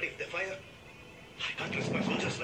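Speech only: a man's voice on the film soundtrack speaking in short phrases, with a quiet pause in the middle.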